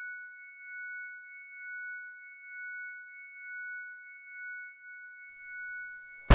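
High-pitched ringing made of two steady pure tones, gently swelling and fading about once a second: a tinnitus-like sound effect.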